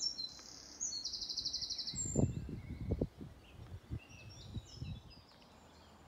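A songbird singing a rapid trill of high repeated notes in the first two seconds, with fainter chirps after. Short low rumbles of wind buffeting the microphone come between about two and five seconds in.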